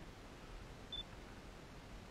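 Pink compact digital camera giving a single short, high-pitched beep about a second in, the kind of beep such a camera gives when its focus locks before a shot.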